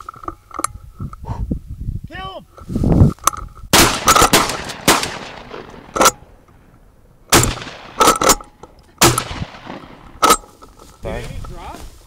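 Shotguns firing a rapid volley of about nine shots, spread over some seven seconds and starting about three and a half seconds in. Each shot is close and loud, followed by a trailing echo.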